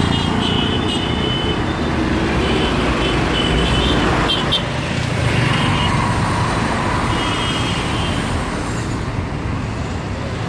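Busy city street traffic: auto-rickshaw, car and motorcycle engines running past in a steady rumble, with several short high-pitched horn toots scattered through.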